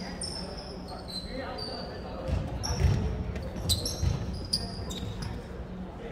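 Sneakers squeaking on a hardwood gym floor in short high-pitched chirps, with a few dull thumps of a ball bouncing on the floor in the middle, over background voices chattering in the gym.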